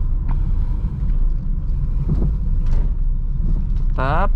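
Engine and road noise inside the cabin of a manual Honda car pulling up a slight incline in second gear with the throttle held open: a low, steady drone, with a few faint clicks.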